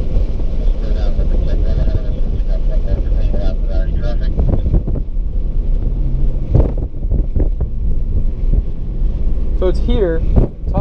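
Engine and tyre noise heard inside a BMW's cabin while it is driven hard, a steady low drone throughout, with faint voices over it.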